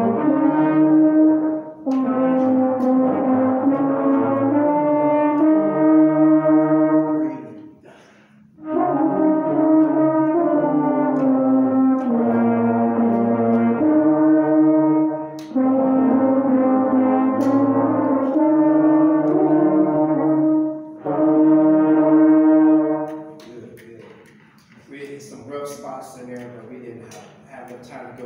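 A small student brass ensemble of trumpet, French horn and trombones playing a slow piece in long held chords, phrase by phrase. Short breaks between phrases mark the players' breathing spots. The playing ends a couple of seconds before the close.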